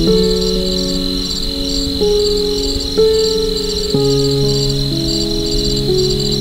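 Crickets chirping in a steady, evenly pulsed trill, mixed with slow, soft piano chords that change about once a second.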